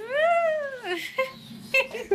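A single drawn-out vocal whoop of nearly a second, rising and then falling in pitch, followed by short snatches of voice and giggling.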